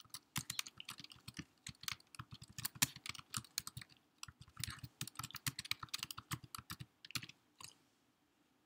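Typing on a computer keyboard: quick runs of key clicks as a line of text is entered, with a short pause about four seconds in, the typing stopping shortly before the end.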